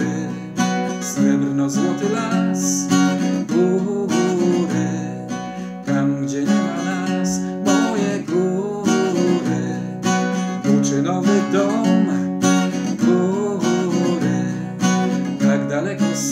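A man sings with long held notes while strumming a steel-string acoustic guitar capoed up the neck, in a steady rhythm.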